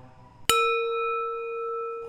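A single struck bell about half a second in, ringing on with several clear overtones and a slow waver in loudness.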